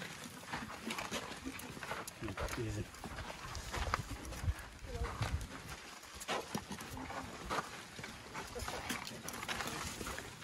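A herd of African elephants walking closely around the microphone on a sandy track: scattered soft footfalls, scuffs and knocks, with low sounds underneath and quiet human voices.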